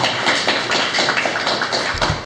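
Audience applauding: many hands clapping in a dense, even patter that cuts off suddenly just after the end.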